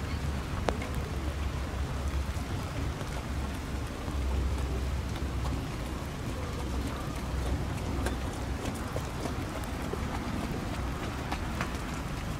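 Steady rainfall with scattered raindrop ticks that come more often near the end, over a low rumble of wind on the microphone.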